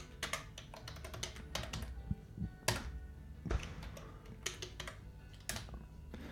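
Typing on a computer keyboard: quick, irregular runs of key clicks with short pauses between them, a few keystrokes louder than the rest.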